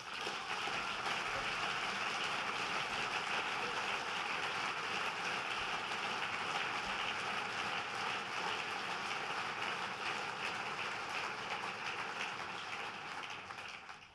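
Large audience applauding, a steady even clapping that eases off near the end.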